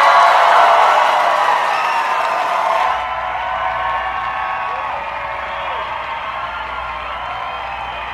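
Party crowd noise: many voices talking and calling out over music. The sound changes suddenly about three seconds in, then gets steadily quieter.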